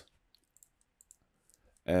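A few faint, scattered clicks of a computer mouse and keyboard, then a man's voice starts just before the end.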